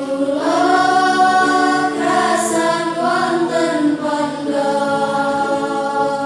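Many voices singing together in unison: a slow Islamic devotional chant (sholawat) with long held notes that glide up and down.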